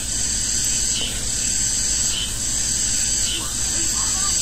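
Steady background hiss with a low hum underneath, even and unchanging, with no speech.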